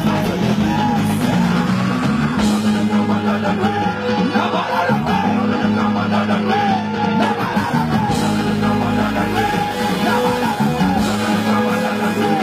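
Loud music with a singing voice over it.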